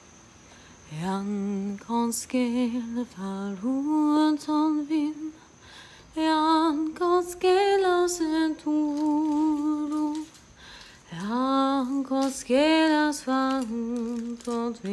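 A woman's voice singing a slow, unaccompanied melody in three phrases with short breaks, holding long notes.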